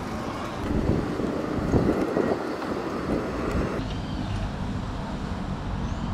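Wind buffeting the microphone over a steady outdoor background of vehicle noise, uneven and gusty at first. About four seconds in it changes abruptly to a steadier, duller background.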